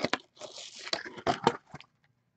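Crinkling and rustling of trading-card packaging and plastic sleeves being handled, in a series of short crackly bursts and clicks.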